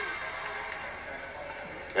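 Steady arena crowd noise coming through a TV broadcast between points, a low even wash that fades slightly.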